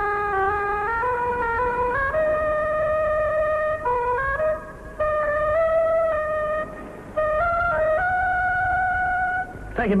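A short, slow tune played as a single melody line, with notes stepping up and down and longer notes held, breaking off briefly twice. It is the comic musical turn of a poker being played as an instrument.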